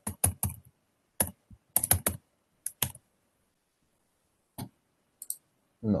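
Typing on a computer keyboard, heard over a video call: irregular keystrokes, a quick run at the start and another about two seconds in, then a few single taps spread apart.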